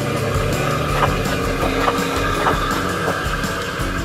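A steady motor hum from a child's ride-on toy bulldozer driving along, under background music.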